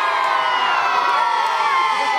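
A crowd of men and boys cheering and shouting together, many voices at once, answering a call for a cheer.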